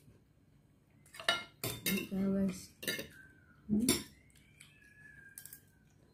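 A few sharp clinks of a plate and cutlery being handled while eating, with a couple of brief murmured hums.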